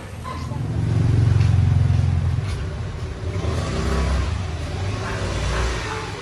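A motor vehicle's engine passing close by, swelling to its loudest about one to two seconds in, then rising again in a second pass later on.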